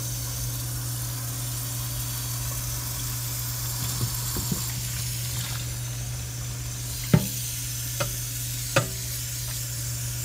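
A pan of thin noodles boiling in water, a steady bubbling hiss over a steady low hum. In the second half there are a few sharp knocks as the pan is handled, the loudest about seven seconds in.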